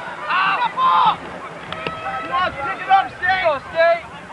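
A flock of geese honking: many short, arched calls overlapping one another, with one sharp click a little under two seconds in.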